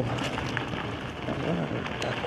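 Steady rushing noise of an electric unicycle being ridden along a dirt trail. A faint, brief murmur of a voice comes about one and a half seconds in.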